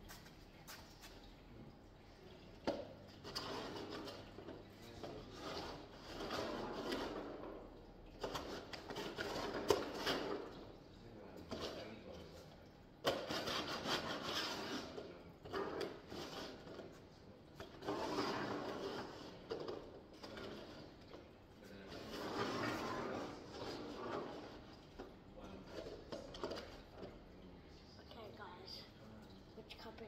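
Plastic cups being shuffled and set down on a tabletop: repeated sliding scrapes and handling noise in bursts of a second or two, with a few sharp knocks.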